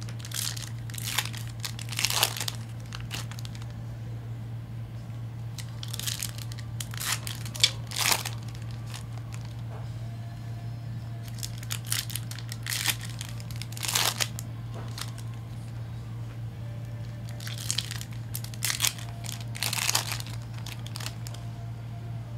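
Foil trading-card pack wrappers crinkling and tearing as packs are peeled open and handled, in four bursts a few seconds apart, over a steady low hum.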